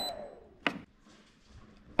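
A single sharp click about two-thirds of a second in, then near silence.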